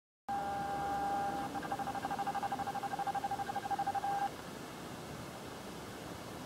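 A single pitched tone that holds steady for about a second, then pulses rapidly, about eight times a second, and stops about four seconds in, leaving a faint hiss.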